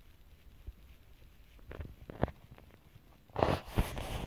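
A few faint clicks of a hobby knife cutting a strip of thin milk-carton plastic on a workbench. Near the end come a louder rustle and a couple of knocks as the plastic model ship is picked up and handled.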